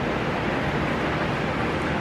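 Steady, even background hiss of room noise, unchanging and with no distinct events.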